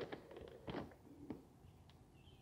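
Hand scooping potting soil from an open plastic bag: a few brief, faint rustles and crackles of soil and bag plastic.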